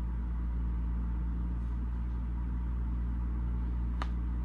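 A steady low hum with faint fixed higher tones over it, as from a running motor or appliance, with a short click at the very end.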